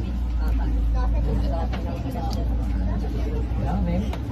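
Steady low rumble of a bus's engine and road noise heard from inside the passenger cabin, with voices over it.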